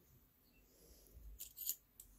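Near silence, with a few faint, short clicks near the end from hands handling a metal screw-type clay extruder.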